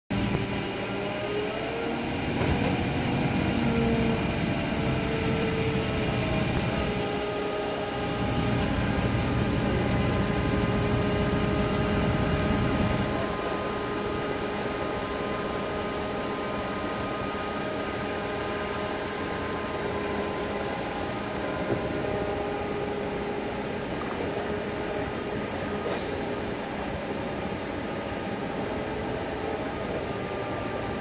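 Diesel power unit and hydraulic drive of a heavy-haul Goldhofer modular trailer running as it moves under load, with a steady hydraulic whine over a low engine rumble. The sound is louder, with its pitch shifting, for about the first thirteen seconds, then settles steadier. There is a single sharp click near the end.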